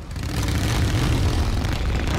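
Motorcycle engine running as the bike pulls away, growing louder in the first half second and then holding steady.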